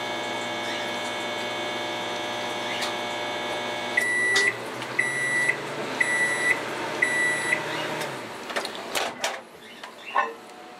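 Microwave oven running with a steady hum, which stops about four seconds in. Four end-of-cycle beeps follow, about a second apart, as the fan runs on and then dies away, and a few sharp clicks come near the end.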